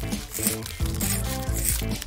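Background music, over scissors snipping through a thin plastic binder sheet protector in short crackly bursts.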